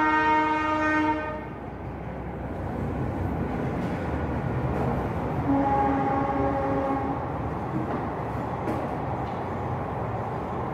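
A horn blast about a second long, then a second fainter blast a few seconds later, over a steady low rumble that grows a little louder.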